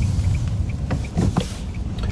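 Road and engine noise inside a moving car's cabin: a steady low rumble, with faint ticks about three times a second.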